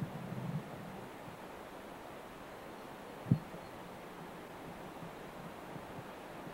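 Steady, low-level outdoor background noise picked up by a camcorder's built-in microphone, with one short low thump a little after three seconds in.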